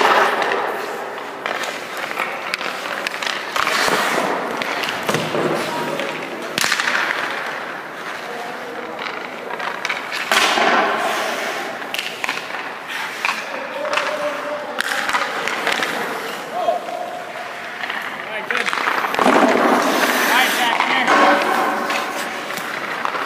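Ice-hockey skates scraping and carving on rink ice in repeated one-to-two-second hissing bursts, with sharp clacks of sticks and pucks in between.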